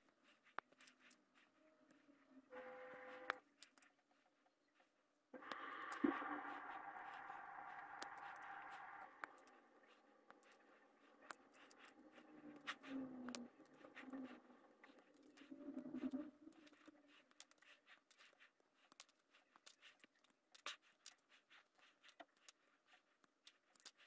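Faint, scattered clicks and snips of sprue cutters cutting small plastic model-kit parts off the sprue, with parts tapping on the paper sheet. A faint hum made of several steady tones comes in for a few seconds in the middle.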